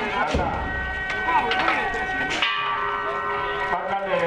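Struck metal percussion ringing out in long steady tones, with sharp strikes and low thumps about a third of a second in and again past the halfway point, amid the voices of a crowd.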